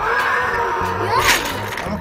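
Electronic toy T. rex roaring from its built-in speaker: one long recorded roar that starts suddenly, wavers in pitch and swells past the middle.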